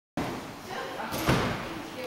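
A single thud about a second in, a gymnast's feet striking a wooden balance beam, over the hum of voices in a gym hall.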